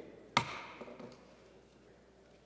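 A single sharp knock on the wooden lectern close to the microphone, about a third of a second in. It rings out briefly in the echo of a large stone chamber, then gives way to a few faint small clicks and quiet room tone.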